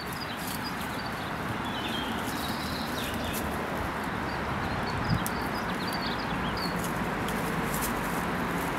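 Outdoor park ambience: a steady background rush with faint bird chirps and scattered light clicks, and a single short thump about five seconds in.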